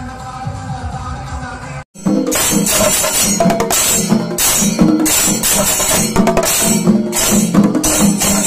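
Kerala chenda melam: chenda drums struck with sticks and ilathalam hand cymbals clashing together in a fast, steady, loud beat. It comes in about two seconds in after an abrupt cut; before that there is a quieter stretch of music with held tones.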